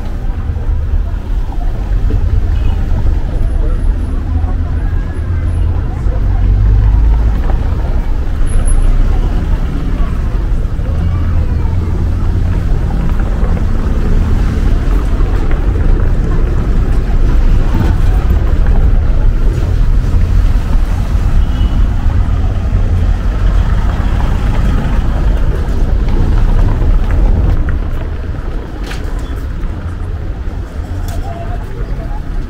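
Street ambience: a steady low rumble throughout that eases off near the end, with people's voices in the background.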